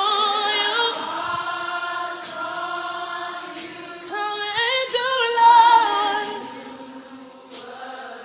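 Gospel choir singing long held notes with vibrato, swelling to a peak about five seconds in and then fading.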